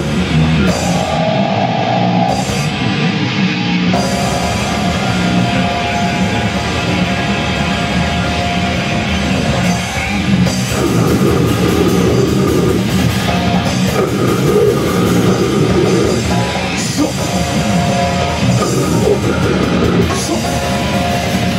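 Live heavy metal band playing loud, with distorted electric guitars and a drum kit. About a second in, the low end and drums drop out briefly, leaving mostly guitar, and the full band crashes back in at about four seconds.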